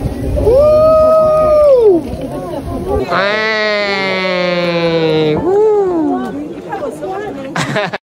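People's voices making long, drawn-out wordless calls: one held note of over a second near the start, then a longer, slowly falling call about three seconds in.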